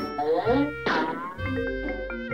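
Light background music, then about one and a half seconds in a phone ringtone starts: a quick melody of short plucked notes, the phone ringing with an incoming call.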